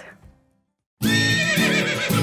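A short silence, then about halfway through a horse whinnying, with a wavering high call, over music with steady low notes.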